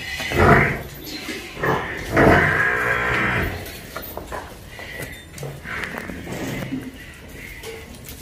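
Water buffalo bellowing: a short call about half a second in, then a longer call of over a second starting about two seconds in.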